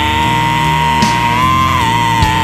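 Heavy metal band playing: an electric guitar holds one long lead note, bending it slightly up and back in the second half, over steady bass and drums.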